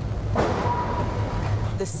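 A car crash: a car slamming into a parked SUV, a sudden crunching impact about a third of a second in that trails off over about a second and a half. A thin steady tone rings under it.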